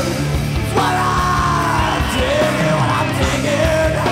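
1990s grunge rock song: electric guitar, bass and drums under a male lead vocal holding long notes that slide in pitch.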